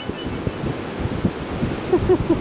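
Wind buffeting the microphone, a fluctuating low rumble.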